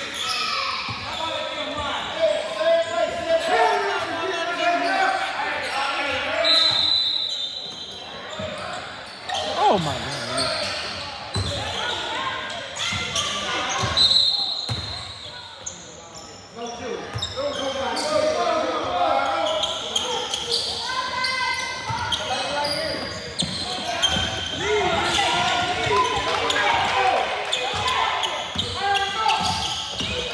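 Basketball game in an echoing gymnasium: a basketball bouncing on the hardwood court under players' and spectators' voices. Two short, high referee's whistle blasts come about six and a half and fourteen seconds in.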